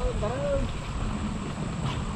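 Wind rumbling on the microphone, with a faint voice in the first half second or so.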